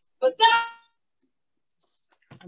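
A woman sings a short held phrase that breaks off less than a second in, followed by dead silence.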